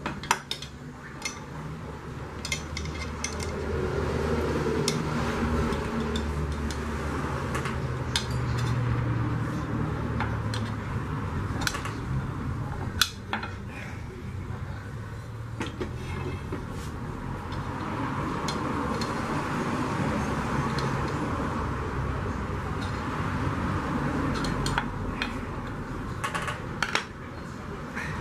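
Metal tools knocking, clinking and scraping against an aluminium pressure-cooker lid in scattered sharp strikes, over a steady low rumble.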